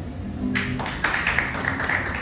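Audience applauding, starting about half a second in, at the end of a recited poem.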